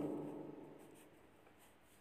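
An echoing tail of the sound just before, with a few held tones, dying away over about the first second; then near silence.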